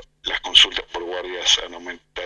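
Speech only: a person talking in Spanish.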